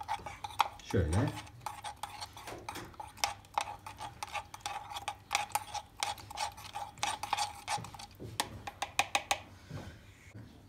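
A metal teaspoon stirring ground Turkish coffee into water in the pot of a Turkish coffee machine, clinking many times against the pot's sides.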